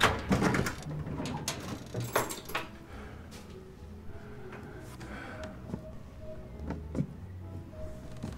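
A sudden loud knock right at the start, then a run of knocks and rattles like a door being opened, settling after about three seconds into a low steady hum with faint short tones.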